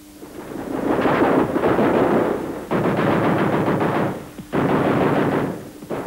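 Three bursts of machine-gun fire: a first of about two seconds, then two shorter ones, with brief gaps between.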